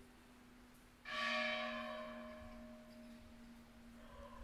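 A church bell struck once about a second in, its ring fading slowly over the hum still left from the stroke before: the slow tolling rung for a funeral.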